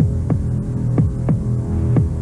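Advert soundtrack: a sustained low drone with a heartbeat-like double thump about once a second, building tension.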